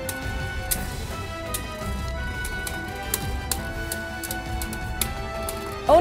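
Two Beyblade Burst spinning tops whirring in a stadium, with several sharp clicks as they strike each other. Background music with held notes plays throughout.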